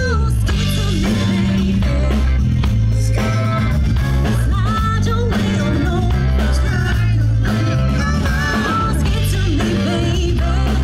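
A live rock band playing through a PA: a drum kit and bass guitar keep a steady beat, with electric guitars and a female and a male singer.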